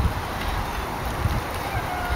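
Wind buffeting the camera's microphone in irregular low rumbles over a steady outdoor hiss.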